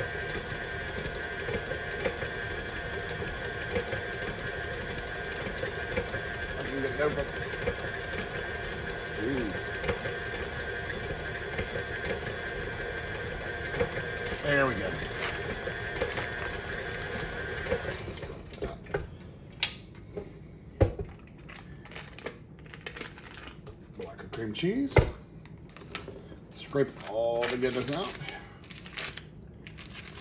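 KitchenAid tilt-head stand mixer motor running steadily while its flat beater creams butter and cream cheese, then switched off a little over halfway through. After it stops, scattered clicks and light knocks follow.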